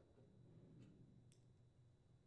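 Near silence, with two faint clicks about a second apart from a Phillips screwdriver seating a screw in a microwave's sheet-metal cabinet.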